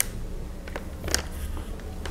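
Cotton macramé cord being handled and threaded through a loop: faint rustles, with one brief scratchy rustle about a second in, over a steady low hum.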